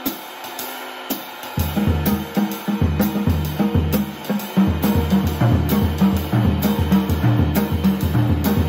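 Jazz swing beat on a drum kit: the ride cymbal keeps time while the left hand plays a triplet rhythm around the toms and the snare with its wires switched off, giving a dry drum sound. The cymbal alone opens, the low drum strokes come in about a second and a half in and grow fuller about halfway through.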